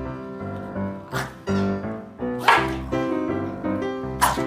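Corgis barking at each other in short, sharp barks: one about a second in and a louder one halfway through, over background music.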